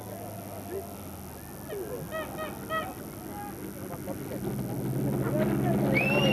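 Subaru RX Turbo rally car's flat-four engine approaching, its drone growing steadily louder through the second half. Scattered shouts and calls from spectators run over it, with a short burst of three high honk-like calls about two seconds in.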